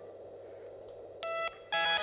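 Low steady hum from the stage amplification, then about a second in a short electric guitar chord with effects, a brief break, and a louder chord held near the end as the song begins.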